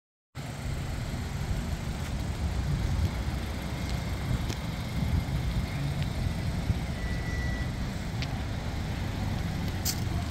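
Volkswagen Atlas's 2.0-litre turbocharged four-cylinder engine idling, a steady low rumble, with a few faint clicks.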